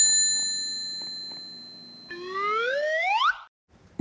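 Desk service bell ringing after being slapped twice, its ring fading away over about two seconds. About two seconds in, a cartoon sound effect glides upward in pitch for about a second.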